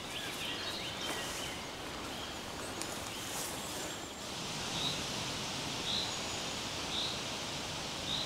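Outdoor natural ambience: steady background noise with faint bird chirps in the first second or so. From about halfway, a short high call repeats about once a second.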